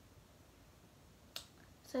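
Quiet room tone broken by a single sharp click about a second and a half in, followed by the start of a girl's speech.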